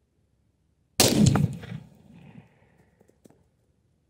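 A single shot from a Henry X Model lever-action rifle in .45-70 Government about a second in, followed by a rolling echo that dies away over about a second and a half. Two faint clicks follow near three seconds.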